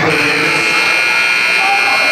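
Gymnasium scoreboard buzzer sounding one steady tone for about two seconds, over crowd chatter.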